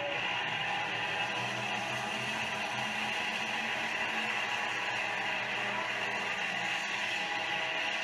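Engines of a pack of street stock race cars running together around an oval track, a steady, noisy drone on old camcorder audio.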